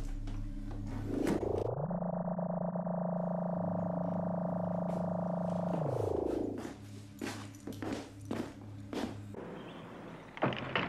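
TARDIS control-room sound effect: a low pulsing hum with sharp clicks of console switches being worked. About a second and a half in, a pitched electronic tone rises, holds for about four seconds, then falls away.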